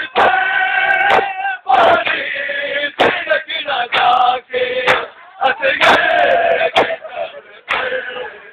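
A crowd of men chanting a mourning lament (noha) in unison, in long held lines with short breaks between phrases, with scattered sharp knocks through it.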